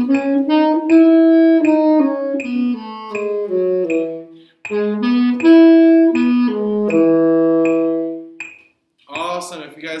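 Tenor saxophone playing the concert E major scale, stepping down from the upper E to the low E. After a short break it plays the E major arpeggio up and back down, ending on a long held low E. A man starts speaking near the end.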